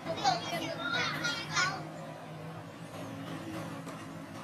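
A young macaque giving a quick run of short, high-pitched squealing cries in the first two seconds, then quieter, over a low steady hum.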